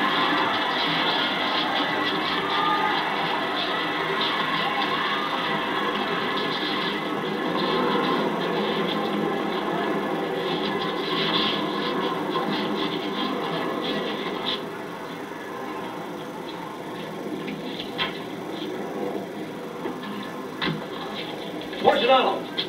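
Crowd din from a boxing-arena scene on a 16mm film's soundtrack, a dense mass of voices heard through the projector's small, narrow-range speaker, dropping off about fifteen seconds in to quieter sound with a few sharp knocks. The running 16mm projector clatters steadily underneath.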